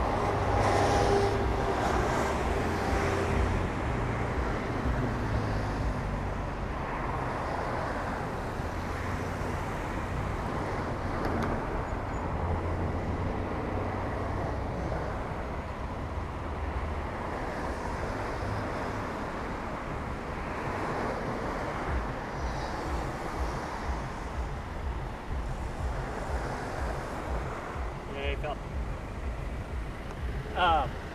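Traffic on a busy multi-lane boulevard: cars and an articulated city bus driving past, loudest in the first few seconds, then a steady rumble of passing vehicles.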